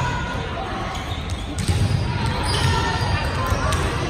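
A volleyball bouncing several times on a hardwood gym floor, in the second half, over indistinct chatter of players and spectators echoing in the gym.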